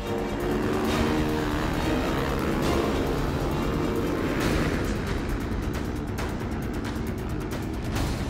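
Music mixed with the engines of off-road rally motorcycles revving at a start and launching across sand, one passing close about four seconds in.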